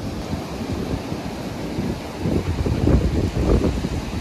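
Gusty storm wind buffeting the microphone, the gusts growing heavier and more uneven in the second half.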